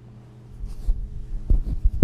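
A run of low thumps and knocks close to a microphone, with a brief rustle about half a second in and the loudest thump at the very end. A steady electrical hum from the sound system runs underneath.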